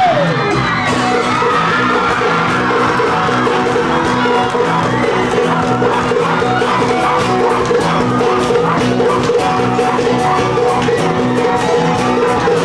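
Pacific island band playing live: a fast, even log-drum rhythm over bass and acoustic guitar, with wavering sung lines. The crowd whoops and yells, a falling whoop coming right at the start.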